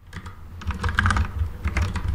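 Computer keyboard being typed on: a quick, irregular run of keystroke clicks as a short phrase is typed.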